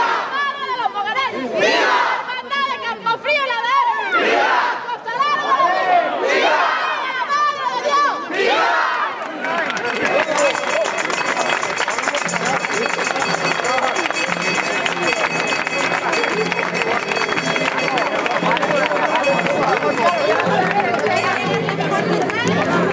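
A large crowd of people shouting and chanting in many overlapping voices. About ten seconds in, the sound thickens into a dense, steady din with music running under the crowd noise.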